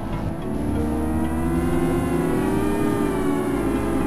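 Electronic synthesizer drone: a dense, steady low rumble with many slowly wavering tones layered over it. From about a second in, the tones glide up and down in pitch, an engine- or siren-like sweep.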